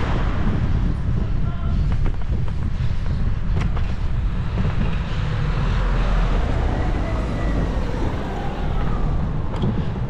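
Steady low rumble of wind and rolling noise on a bicycle-mounted camera while riding, with car traffic close alongside.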